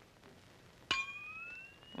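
Cartoon sound effect: a single sharp metallic clang about halfway through, its ringing tone sliding slowly upward in pitch as it fades.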